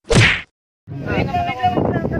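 A short, loud whoosh-and-whack editing sound effect lasting under half a second, starting suddenly and falling away, followed by a moment of dead silence before voices and outdoor noise come back about a second in.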